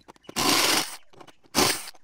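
Ryobi cordless impact driver undoing a bolt on a caravan awning arm bracket, in two short bursts: one of about half a second, then a shorter one near the end.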